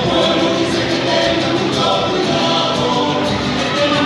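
Chilean folk music of the Chiloé kind, a song sung by a group of voices over instrumental accompaniment, playing steadily as dance music.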